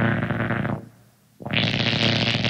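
Harsh noise music: a dense, distorted electronic noise texture with a heavy low rumble. It fades out a little under a second in, drops to near silence briefly, then cuts back in harsher and brighter about a second and a half in.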